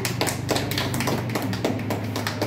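A small group clapping their hands, an irregular run of claps over a steady low hum.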